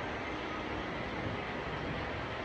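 Steady, even background noise with no speech and no distinct events.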